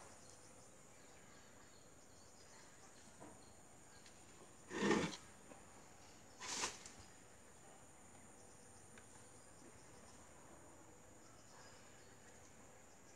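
Faint, steady insect chirring, broken by two brief louder handling noises, about five and about six and a half seconds in.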